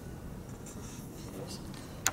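A few faint rustles and light clicks over quiet room tone.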